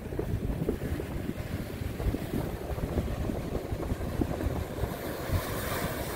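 Ocean surf breaking and washing over exposed coral rock at high tide, with wind buffeting the microphone in uneven low rumbles. Near the end the hiss of a breaking wave grows louder.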